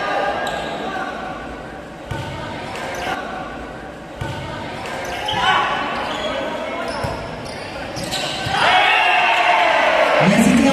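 A volleyball rally in a large, echoing gym: the ball is hit several sharp times as it is passed, set and spiked, while players and spectators shout. The shouting swells louder near the end.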